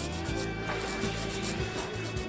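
A handheld nail file rubbing back and forth across fingernails in short, quick strokes, over background music.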